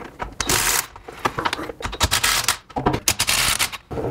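Cordless DeWalt 20V XR impact wrench hammering in several short bursts, about half a second each, as it spins off the nuts holding the third member to the rear axle housing.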